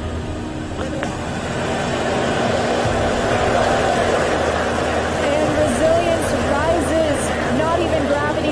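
Falcon 9 rocket's nine Merlin engines at ignition and liftoff, a broad, dense noise that builds steadily louder.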